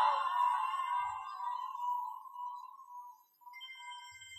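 The tail of a male reciter's held note in Quran recitation, dying away in a long echo over about three seconds. Faint steady ringing tones follow near the end.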